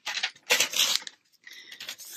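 Handling noise of a paper notebook being picked up and brought onto the table: a few short rustles and scrapes, the loudest about half a second in.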